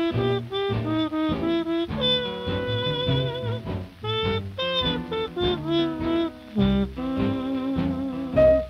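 Swing-style jazz song: a horn carries the melody over bass and accompaniment, with wavering held notes about two seconds in.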